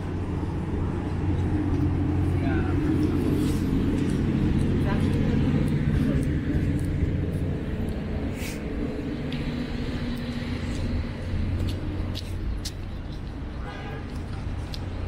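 City street sound dominated by a nearby motor vehicle's engine running with a steady low hum, growing louder over the first few seconds and easing off after about seven seconds. Background voices of people nearby.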